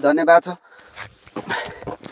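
A man's voice for about the first half second, then three short, quieter sounds about a second in, at one and a half seconds and near the end.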